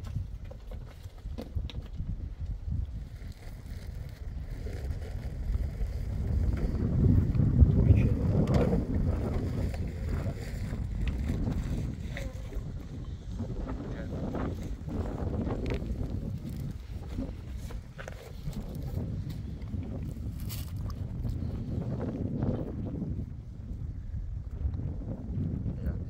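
Wind buffeting the microphone: a low, gusty rumble that swells loudest about seven to nine seconds in, with a few faint clicks.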